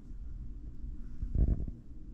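A brief, dull low thump about one and a half seconds in, over quiet room sound.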